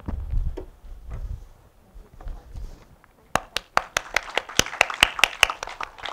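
Brief applause from a small audience begins about three seconds in, sharp individual claps over a light wash, then dies away. Before it come a few low thuds.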